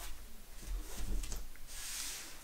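Sleeved trading cards being picked up and slid off a cloth playmat by hand: handling rubs and light knocks on the table, a few small clicks about a second in, and a soft sliding hiss near the end.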